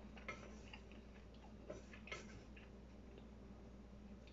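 Faint, irregularly spaced clicks of wooden chopsticks against a bowl while noodles are eaten, over a steady low hum.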